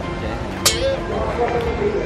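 Speech over background music: a short, sharp vocal sound about half a second in, then brief bits of voice.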